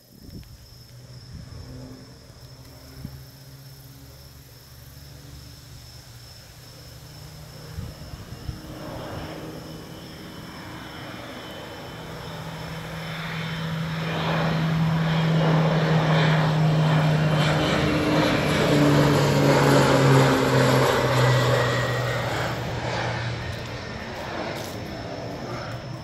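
Crop-duster airplane flying low overhead: its propeller engine drone builds over several seconds, is loudest midway, drops in pitch as the plane passes, then fades.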